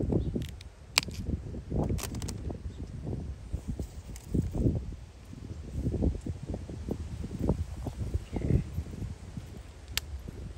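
Pea vines rustling and sharp clicks as snap pea pods are pulled off the vine by hand, a couple of snaps in the first two seconds, over an irregular low rumble of wind on the microphone.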